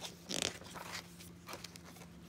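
A picture book's paper page being turned by hand: a short swish about half a second in, then faint rustling as the book settles.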